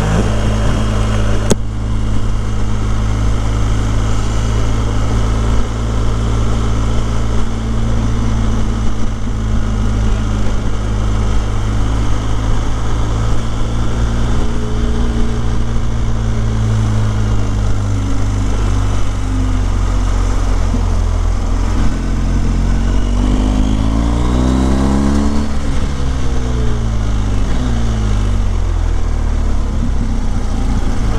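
BMW R 1250 GS HP boxer-twin motorcycle engine running at a steady cruise under wind and road noise, heard from the riding bike. Late on, the engine pitch swings up and down several times as the bike works through a bend.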